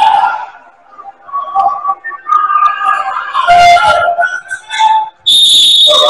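Basketball referee's whistle: one sharp, steady, high blast about five seconds in, stopping play.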